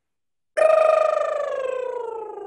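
A woman's voiced lip trill, lips fluttering while she sings one long note that slides slowly down in pitch. It starts about half a second in.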